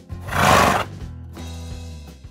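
A horse whinny sound effect, one short loud call lasting under a second, over steady background music.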